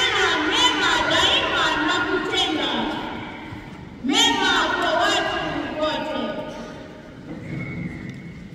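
Speech: a boy reading aloud into a handheld microphone, pausing briefly about three seconds in and again near the end.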